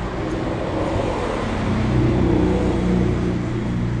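A motor vehicle's engine running on the street, a steady low rumble that grows a little louder toward the middle and then eases off.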